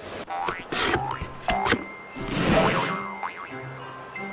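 Children's TV channel ident music with cartoon sound effects: springy boings with quick falling glides, and a whoosh about two and a half seconds in.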